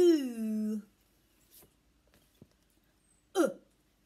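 A woman's voice sounding the phonics sound 'oo': a long, stretched 'oo' that glides down in pitch and lasts just under a second, then a second, short clipped vowel about three and a half seconds in, the short 'oo' of 'look'.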